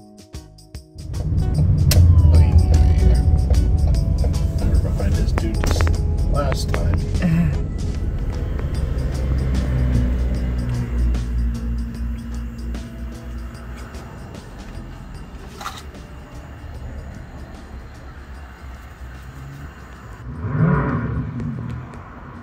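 A loud low rumble that sets in about a second in and fades gradually over the second half, with a few scattered clicks and knocks.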